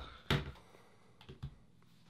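A Nexus 5 smartphone being set down on a plastic wireless charging pad on a wooden table: a few light knocks and clicks, the loudest about a third of a second in and a fainter pair just before the halfway mark.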